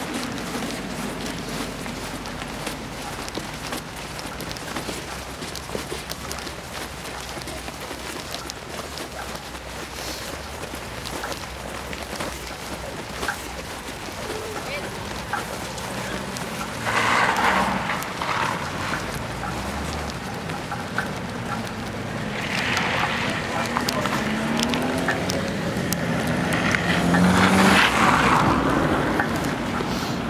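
Cars driving past on a snow-covered street: a steady low traffic hum, one car going by a little past halfway and another passing near the end with its engine rising in pitch as it accelerates.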